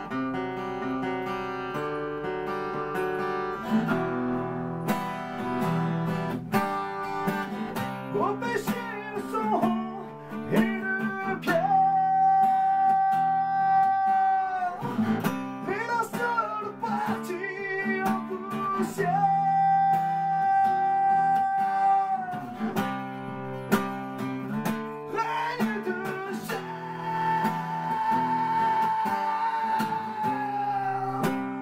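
A man singing live to his own strummed acoustic guitar, holding three long notes: one about twelve seconds in, one near twenty seconds, and one near the end.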